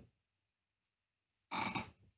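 Near silence for about a second and a half, then a brief voice-like sound near the end.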